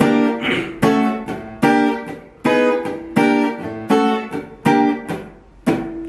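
Steel-string acoustic guitar playing the same chord shape shifted up to the seventh fret, about eight chords struck roughly one every 0.8 s, each left ringing and fading before the next.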